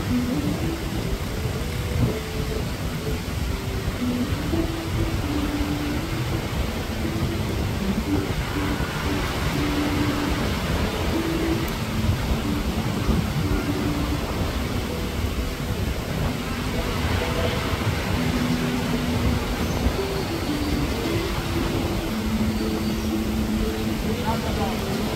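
Steady low rumble of surf and wind on the microphone, with faint short pitched notes coming and going above it.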